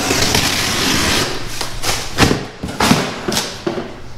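Cardboard scraping and sliding against cardboard as an inner box is worked out of a larger shipping box. This is followed by several sharp knocks and thumps in the second half.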